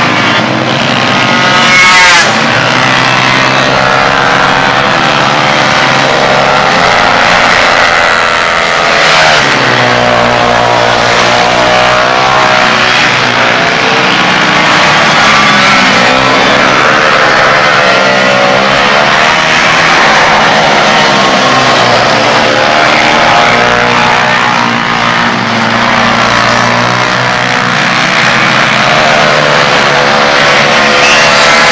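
Several small racing minibike engines revving hard as a pack passes and corners, their pitches rising and falling over and across one another.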